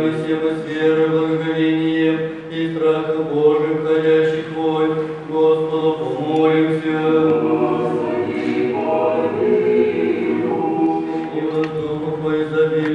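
Several voices singing Orthodox liturgical chant together in harmony, with long held notes that change slowly.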